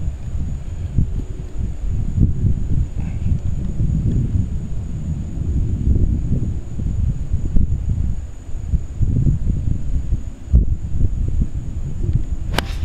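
Wind buffeting the microphone: a low, irregular rumble that swells and fades.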